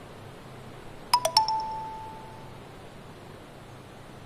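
A quick three-note chime about a second in: three struck tones in fast succession, the last one ringing on for about a second.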